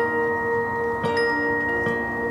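Marching band front ensemble playing mallet percussion: ringing chords struck about a second apart, the notes sustaining between strikes.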